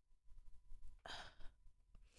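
A woman's sigh into a close microphone, one soft breath about a second in.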